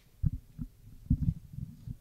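Irregular low thumps and bumps of a press-conference table microphone being handled or knocked. The loudest come about a quarter second and about a second in.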